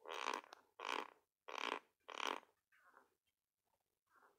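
A person's faint breathy throat sounds: four short bursts, evenly spaced in the first two and a half seconds, then a fainter fifth.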